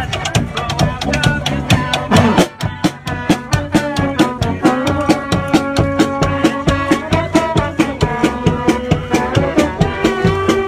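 Live street band playing: bass drums beating a fast, steady rhythm under held melody notes from violin and accordion. The drums drop back briefly a little over two seconds in, then carry on.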